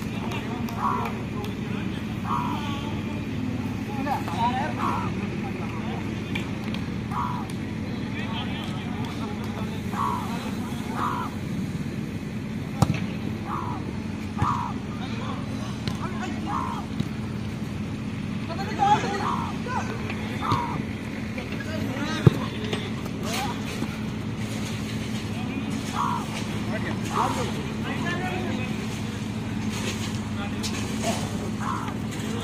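Outdoor five-a-side football ambience: players' voices calling across the pitch over a steady low hum, with two sharp ball kicks, one about halfway through and one later on.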